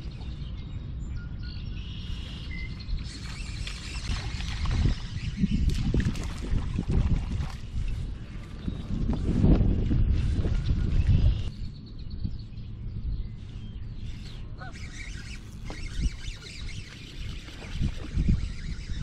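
Outdoor ambience over open water: wind rumbling on the microphone, louder from about nine to eleven seconds in, with a few faint bird calls.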